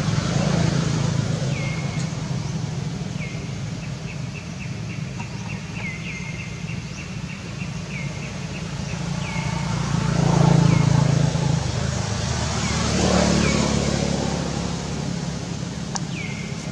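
A motor vehicle engine running with a steady low hum, swelling as vehicles pass about two-thirds of the way through. Over it a bird repeats a short falling chirp every second or two, with a quick run of chirps a few seconds in.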